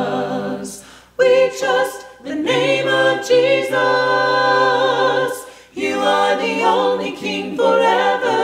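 Four-part a cappella singing in harmony by two women and two men, a worship song sung in phrases with short breaks between them: about a second in, just after two seconds, and near six seconds.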